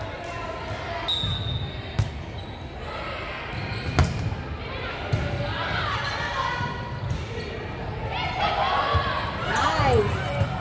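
Volleyball impacts echoing in a gym: a sharp smack about two seconds in and a louder one about four seconds in. Voices of players and spectators run throughout.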